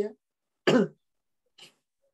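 A man coughs once, briefly, about two-thirds of a second in.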